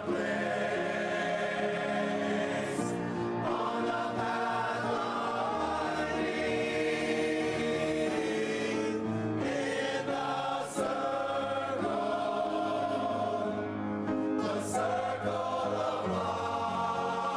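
Men's chorus singing in full harmony, holding long chords with a few short sibilant consonants.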